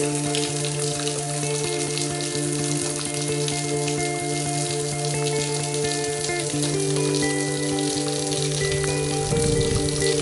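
Small waterfall trickling off a rock ledge and splashing into a rock pool, a steady patter of falling water, under background music of sustained chords that change about two-thirds of the way through. A brief low rumble near the end.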